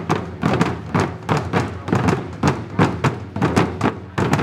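Ensemble of Japanese taiko drums struck with wooden sticks: a steady rhythm of loud drum hits, about three to four a second, many falling in quick pairs.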